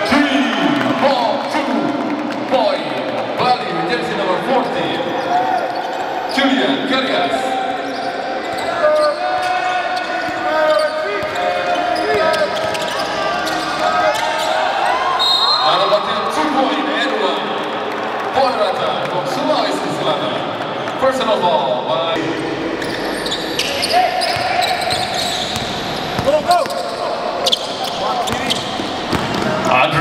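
Live basketball game sound: a ball bouncing on a hardwood court, with many voices calling out across the hall.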